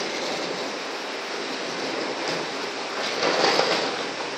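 Vacuum conveying system running, a steady rushing suction noise through its pick-up wand and hose, swelling louder for about half a second near the end.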